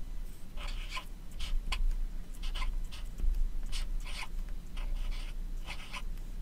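A marker writing on paper: a series of short scratchy strokes, some in quick pairs, as a word is written out letter by letter.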